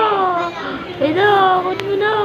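A baby making long, high-pitched vocal sounds: two drawn-out calls that fall in pitch, about a second apart.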